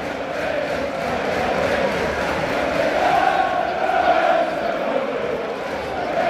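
Football crowd in the stands chanting together, a dense mass of voices that swells about halfway through and then eases.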